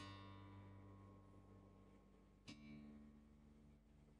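Two faint plucked notes on an electric bass guitar, the second about two and a half seconds in with a click at its attack, each ringing and dying away. The preamp's mute is on for tuning, which cuts the amplified sound and leaves only the quiet sound of the strings.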